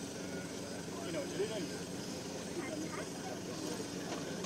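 Off-road vehicle's engine running steadily at low revs, with faint voices in the background.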